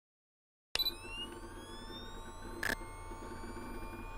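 Electronic sound effect: after silence, it starts suddenly with a click into a steady low hum and held tones under a slowly rising whine, with one short glitchy burst about two and a half seconds in.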